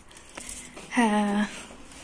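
Thin plastic bag of foil-wrapped chocolates rustling faintly as it is handled, with a short 'hı' from a woman's voice about a second in.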